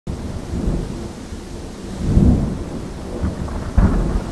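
Rain with thunder rumbling, a low roll swelling about two seconds in and another near the end.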